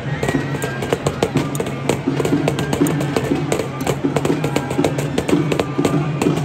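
Live folk dance tune played by a street musician over a steady low drone, with many sharp clacks scattered through it.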